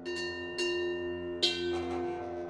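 Contemporary ensemble music: bell-like percussion struck with hard cord mallets and left to ring, three strikes in about a second and a half, over steady low sustained brass tones.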